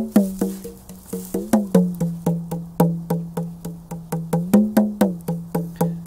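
Small rope-laced hand drum played with the fingers in a steady rhythm of about four strokes a second, the head ringing with a clear pitch; a few strokes bend downward in pitch.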